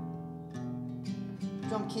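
Ashton six-string acoustic guitar with chords ringing on. A new chord is picked about half a second in and another near the end.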